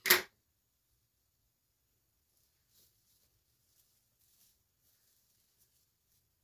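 One sharp snip of scissors closing through deco mesh ribbon right at the start, then near silence with a few faint handling ticks.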